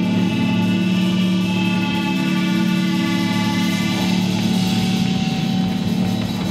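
Live amplified electric guitars holding a loud, steady droning chord with high ringing overtones, without drums.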